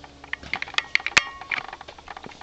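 A string of light, irregular clicks and clinks, the loudest a sharp clink a little over a second in that rings briefly like small metal pieces knocking together.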